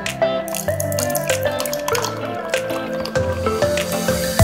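Background music, with a drink being poured into a drinking glass, the liquid splashing and filling it from about half a second in.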